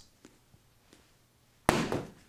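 A paperback book being handled and put down: a few faint taps, then near the end a sudden short knock with a brief rustle as it fades.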